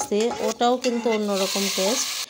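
Hot oil with fried onions and whole spices sizzling and hissing in a pot of lentil-and-greens dal as it is stirred, the hiss strongest near the end. A woman's voice talks over most of it.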